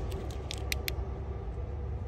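Wiring and corrugated plastic loom being handled on a motorcycle: a few short clicks and rustles about half a second in, over a steady low background rumble.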